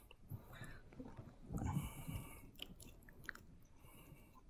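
Faint handling noise: scattered small clicks and a brief rustle about a second and a half in, as a plastic water bottle is picked up and opened.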